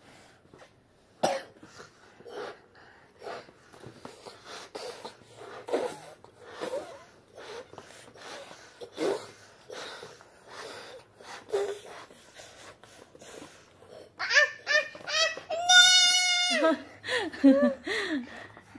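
A child blowing up a latex balloon: short, forceful puffs of breath into the neck every second or so, with breaths drawn in between. Near the end come louder high-pitched sounds, including a steady high squeal lasting about a second, followed by a child's voice.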